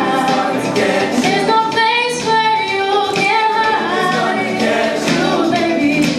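Show choir singing in harmony, with a female soloist's voice out front over the choir's held chords.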